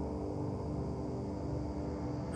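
Low, dark ambient background music: a steady held drone.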